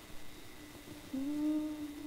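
A voice humming one held note, starting about halfway through and rising slightly: the first note of a hymn about to be sung.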